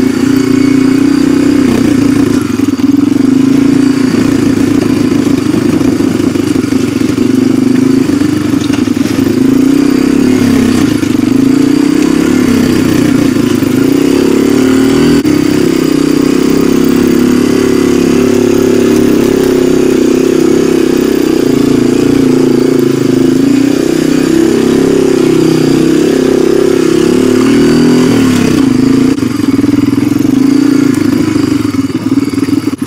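Honda ATV engine running steadily under way over a rocky trail, heard loud and close from the rider's seat.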